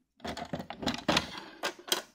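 Hinged plastic lid of a weatherproof outdoor socket box being handled and shut: a run of hard plastic clicks and knocks, the sharpest about a second in and near the end.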